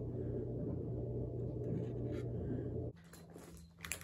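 A steady low background hum that cuts off abruptly about three seconds in, leaving quieter ambience with a few faint clicks.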